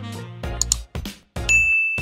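Subscribe-button animation sound effects over upbeat background music: a quick double mouse click, then, about a second and a half in, a single bright notification ding that rings on.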